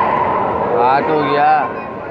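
A voice calling out loudly for about a second, over the steady din of a crowded indoor sports hall.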